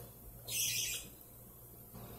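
A budgerigar gives one short, harsh chirp about half a second in, over a faint steady hum.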